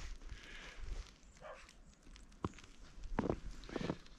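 A few soft, separate footsteps in snow, the clearest about halfway through and near the end.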